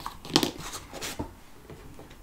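Hands handling small tools and florist wire on a plastic work board: a few brief rustles and light taps in the first second or so, the clearest about a third of a second in, then only low room noise.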